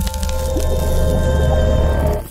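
Logo-animation sound effect with music: held synthesized tones over a strong, deep bass drone.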